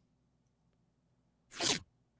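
Near silence, then about a second and a half in, the short version of a 'digisweep' transition sound effect plays once: a brief noisy sweep lasting about a third of a second.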